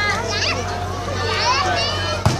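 Many children's voices chattering and calling out at once, several high voices overlapping, over a steady low hum.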